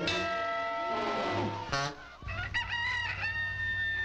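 Cartoon rooster crowing: one long call, then a second cock-a-doodle-doo that rises in steps and is held near the end.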